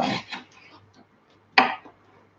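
Kitchen knife cutting capsicum into strips on a wooden breadboard, with one sharp cut down onto the board about a second and a half in.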